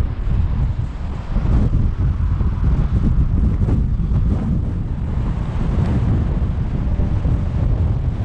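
Strong wind buffeting the camera's microphone: a loud, gusting low rumble.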